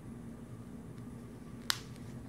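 A single sharp click of a snap fastener being pressed shut on a small fabric pad pocket, heard once near the end over faint room tone.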